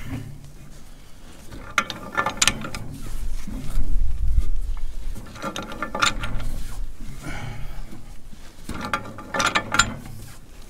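A long-handled ratchet clicking in three short bursts as it is swung back and forth, turning a rust-bound precombustion chamber out of a Caterpillar D2 diesel cylinder head. A low rumble, loudest about four seconds in, falls between the bursts.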